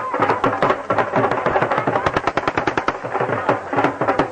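Traditional South Asian drumming: a rapid, unbroken run of drum strokes.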